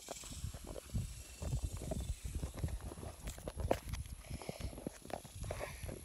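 Phone microphone handling noise: irregular rustles, knocks and scrapes as the phone is moved about, over a low wind rumble.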